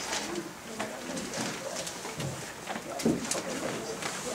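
Indistinct voices talking away from the microphone in a room, low and wavering, with scattered small clicks and knocks.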